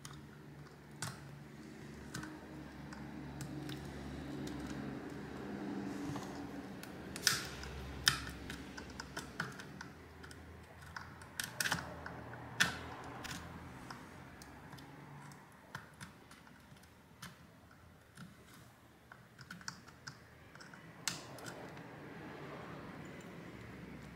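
Precision screwdriver tip prying and scraping inside a plastic Bluetooth speaker housing: irregular small clicks and taps of metal on plastic, a cluster of louder ones around the middle. A faint low hum sits underneath through the first half.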